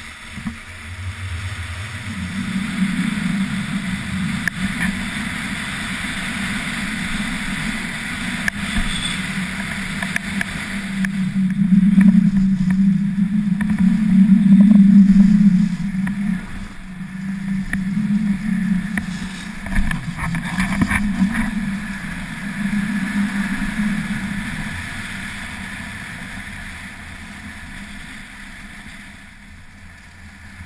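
Rushing wind on an action camera's microphone together with skis sliding and scraping over packed snow during a downhill run. It surges with speed, is loudest about halfway through and dies down near the end.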